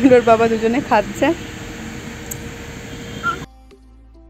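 A person's voice making drawn-out, sliding sounds for about the first second, then steady background noise; quiet instrumental music starts suddenly about three and a half seconds in.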